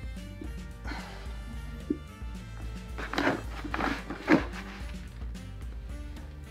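Background music with steady held notes. Over it, a hand pressing and packing damp coir substrate in a glass tank gives short rustling scrunches, most of them in a cluster a few seconds in.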